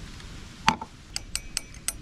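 Light clinks of a utensil against a tea cup while tea is being made: one sharp clink about two-thirds of a second in, then a quick string of fainter, ringing clinks.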